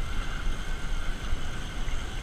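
Riding noise from a Bafang BBS02 750 W mid-drive e-bike climbing a steep hill under motor power: steady wind rumble on the microphone with a faint, even whine over it.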